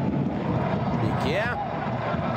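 Steady stadium crowd noise from a football match, with a commentator speaking a single word about a second in.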